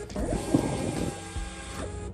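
Munbyn thermal printer printing a sticker: a steady mechanical whir of the paper feeding through the print head for nearly two seconds, stopping abruptly near the end.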